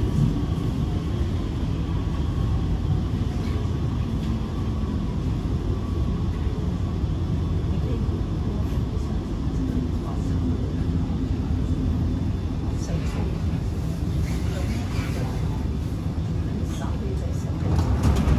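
SMRT R151 metro train running, heard from inside the carriage: a steady low rumble of wheels and car body, with a faint traction-motor whine from its SiC-VVVF drive that falls slowly in pitch over the first several seconds.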